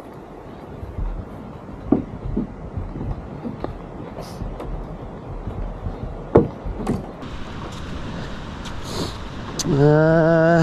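Loaded fishing kayak being wheeled along a concrete path: a steady low rolling rumble with occasional sharp knocks and rattles from the hull and gear. A man's voice starts near the end.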